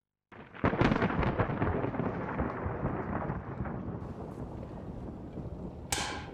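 A sudden crackling rumble, thunder-like, that starts about a third of a second in, is loudest in its first second and slowly dies away, ending in a sharp click.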